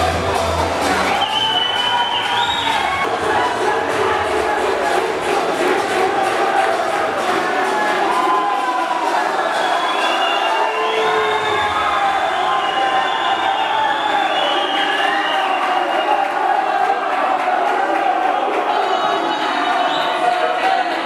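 Crowd cheering and shouting, loud and unbroken, over music.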